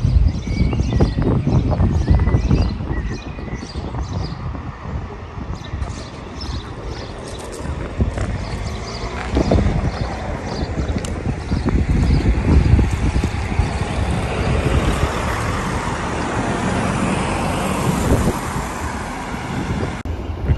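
Wind buffeting the microphone in gusts, with road traffic noise; a broad rushing hiss builds up in the second half.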